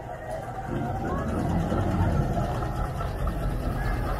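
Steam traction engine passing close by, a low steady rumble from its engine and iron-rimmed wheels on the road that grows louder about a second in.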